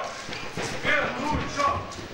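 Faint voices echoing in a large hall, with a soft low thud about halfway through.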